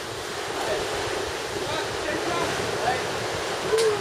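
A steady outdoor rushing noise, with a faint short voice sound near the end.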